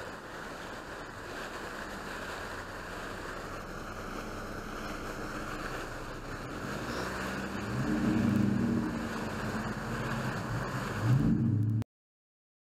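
Pond aerator fountain spraying: a steady rush of falling water. From about eight seconds in a low hum rises and falls over it, and all sound cuts off suddenly just before the end.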